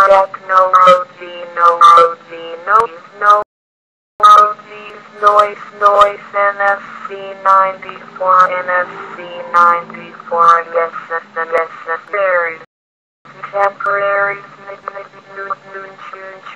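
Synthesized female text-to-speech voice (Microsoft Mary) reading English dictionary headwords one at a time, each a short separate utterance. The audio cuts out to silence twice, once about three and a half seconds in and once near 13 seconds.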